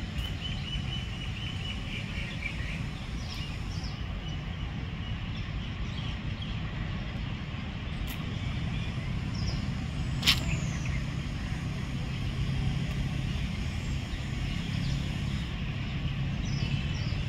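Outdoor ambience: a steady low rumble of distant traffic, with small birds chirping, a trill in the first two seconds or so and a few short chirps later. One sharp click about ten seconds in.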